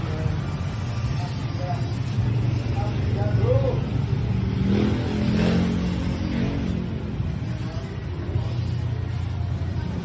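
Portable HEPA air purifier's fan running with a steady low hum, with faint voices over it.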